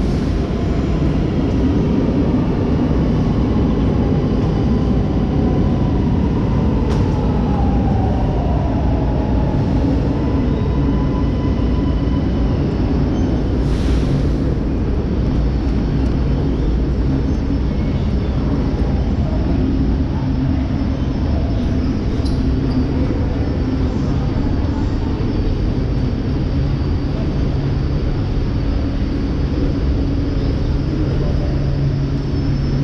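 Steady, loud low rumble of an underground metro station's background noise, with a faint squeal sliding down in pitch about seven seconds in and a short hiss about halfway through.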